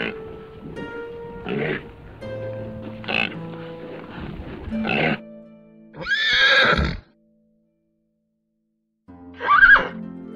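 A series of animal calls over background music with held notes. The loudest call, about six seconds in, lasts about a second and rises then falls in pitch, much like a horse's whinny. The sound then cuts out completely for about two seconds before another loud call near the end.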